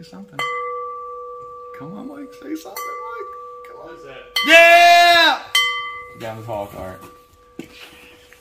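Hand-cut Czechoslovakian crystal bowl flicked on the rim with a finger, ringing with a clear sustained tone that is struck afresh three times. In the middle a person's voice holds a loud note for about a second, louder than the ringing, and a few murmured words follow.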